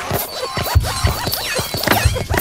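Heavily edited logo soundtrack: music mixed with a rapid jumble of scratch-like clicks, squeaks and low thumps, several a second, with quick rising-and-falling squeaky glides near the end.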